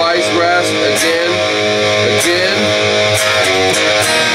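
Distorted electric guitar strumming hard-rock chords with a pick, playing along with the recorded song, in which a singing voice can be heard.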